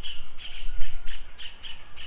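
A bird calling in a quick run of short, sharp, squawking notes, several a second, over a low rumble.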